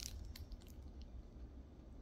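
Quiet handling of a plastic-wrapped canvas picture: a few faint crinkles and ticks of the shrink-wrap over a low steady room rumble.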